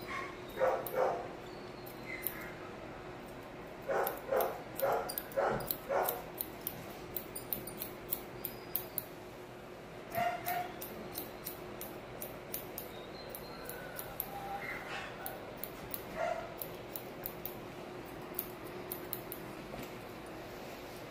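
Grooming scissors snipping repeatedly around a Yorkshire terrier's muzzle, while the small dog gives short yips: a pair about a second in, then a quick run of five a few seconds later.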